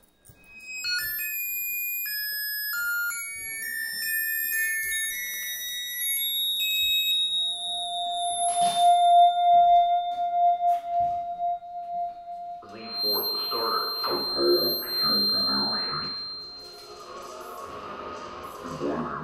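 Live electronic music from synthesizers: clean electronic tones hop quickly between high pitches, several at once. From about seven seconds a single steady tone is held. Near the end it gives way to a denser, pulsing texture lower down.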